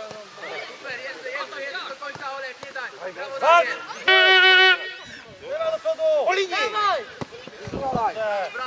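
Men shouting calls across an outdoor football pitch, several voices overlapping. A little after the middle comes one loud, flat held tone of about half a second.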